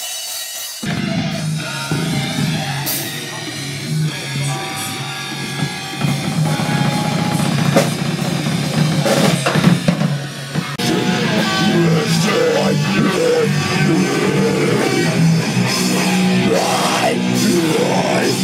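A local hardcore/metal band playing live: drum kit and electric guitars, starting about a second in. In the second half a vocalist sings into a microphone over the band.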